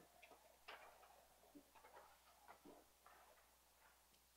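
Near silence: room tone with faint, scattered ticks and taps.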